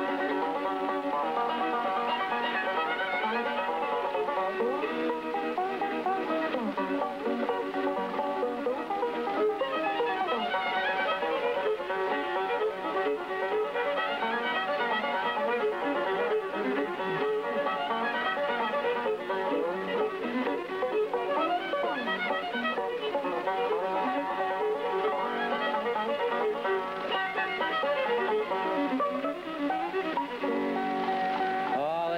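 Fiddle and five-string banjo playing a bluegrass instrumental together, with the bowed fiddle carrying the melody over the banjo's picking.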